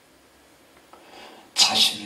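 A short pause with quiet room tone. About one and a half seconds in, a man's voice comes back loudly on the microphone with a sharp, hissy onset.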